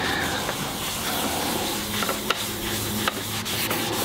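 Paper towel rubbing beeswax paste onto the outside of a poured-concrete bowl: a steady rubbing with a few faint ticks.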